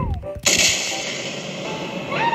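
Cartoon sound effects: the end of a descending falling whistle, then about half a second in a loud crash-boom with a long, noisy, slowly fading tail.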